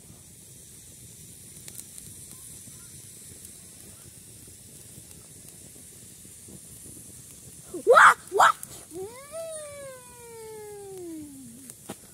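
A boy's voice: two short loud cries about eight seconds in, then a long drawn-out yawning groan that falls steadily in pitch for a couple of seconds. A faint steady hiss runs underneath before the cries.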